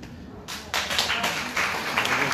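Audience applauding, starting about half a second in.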